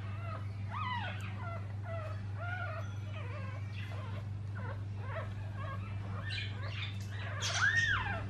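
A newborn poodle puppy, one day old, squeaking and whimpering while held in a hand, in short rising-and-falling cries, several a second, with a longer, louder cry near the end. A steady low hum runs underneath.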